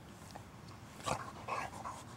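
A dog, rolling on its back in grass, gives two or three short vocal sounds about a second in, the first the loudest.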